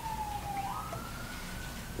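A faint distant siren wail: a single thin tone sliding slowly down in pitch, then rising again a little over half a second in.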